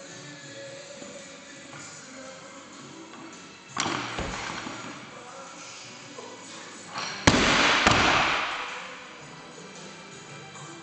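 A loaded barbell with bumper plates dropped from overhead onto the gym floor: a loud crash a little after seven seconds, a second bang as it bounces, then a rattle dying away. About four seconds in there is a lighter thud from the lift itself.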